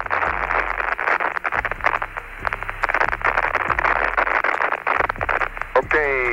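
Crackling radio static on the Apollo 17 lunar module's air-to-ground voice link: a steady hiss full of rapid crackles, thin like a telephone line. The static comes from vibration in the spacecraft while the ascent engine fires.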